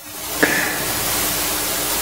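Steady hiss of a recording's background noise and room tone, with a faint low hum, fading in after a cut to silence; a small click about half a second in.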